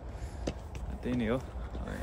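A man's voice: a short utterance about a second in, over a steady low rumble, with a small click near the start.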